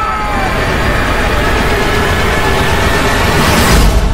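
Loud rushing roar that builds, growing brighter and louder toward the end, then cuts off abruptly: a sound-design riser hitting a cut to black.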